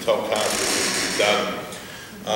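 A man speaking, with a dry, rasping noise lasting about a second and a half partway through.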